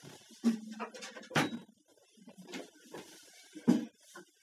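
Handling and movement noise from a person sitting down and taking up an acoustic guitar: a few scattered knocks and bumps with light rustling between them, the loudest about a second and a half in and again near the end.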